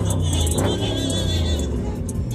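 A car engine idling with a steady deep rumble, under music and crowd voices.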